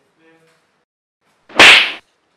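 A single loud, sharp slap near the end, fading within about half a second.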